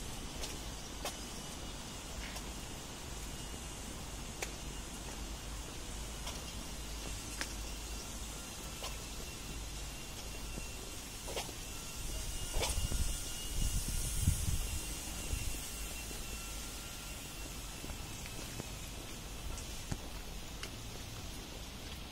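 Outdoor background noise with faint, irregular footsteps on a paved path. A louder rumbling stretch comes in the middle for a few seconds.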